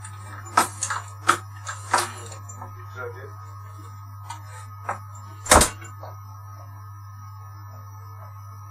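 Scattered knocks and clatter of someone moving about in a back room, then one loud, deep thud about five and a half seconds in as a door is pushed shut. A steady low hum runs underneath.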